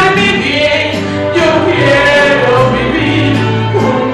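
A woman singing a Christian worship song into a microphone, amplified over the church sound system, over instrumental accompaniment with a steady bass line.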